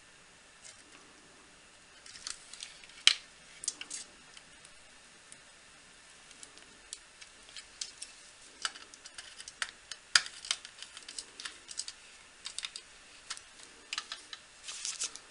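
Irregular light clicks and ticks of a small screwdriver and wires being handled at a circuit board's screw terminal block, as fan leads are fastened in. The clicks come in scattered clusters, with a couple of sharper ones a few seconds in and again near the middle.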